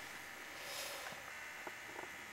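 Faint room tone and hiss, with a couple of small clicks near the end.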